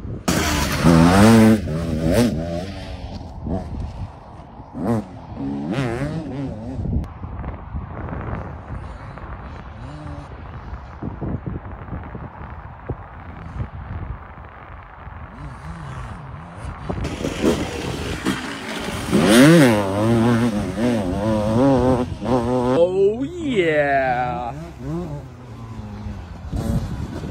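Motocross bike engine revving up and down through the gears on a dirt track. It is loud and close in the first couple of seconds, fainter and distant in the middle, and loud again from about seventeen seconds in, with sweeping rises and falls in pitch as it passes.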